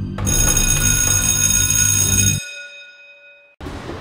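Electric school bell ringing, starting sharply just after the start and ringing for about two seconds before dying away: the bell that ends the test.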